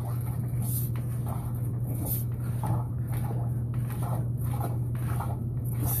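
A steady low hum with irregular soft rubbing and scraping as a sewer inspection camera's push cable is fed down a drain line.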